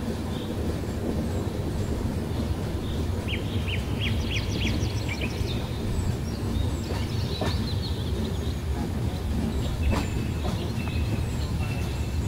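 Steady low rumble of a moving train. About three seconds in, a bird calls in a quick series of short chirps lasting a couple of seconds, and a few fainter chirps follow.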